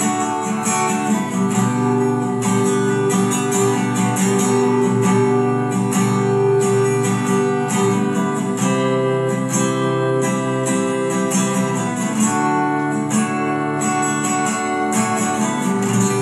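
Acoustic guitar strummed in a steady, repeating chord pattern with no singing, about three to four strokes a second.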